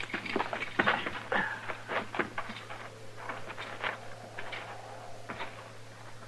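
Radio-drama sound effects of footsteps: irregular short crunches and knocks as the men set off on foot through brush, over a steady low hum from the old broadcast recording.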